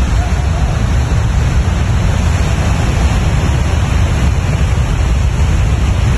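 Debris flow of mud and boulders rushing down a slope: a loud, steady rushing noise, heaviest in the low end.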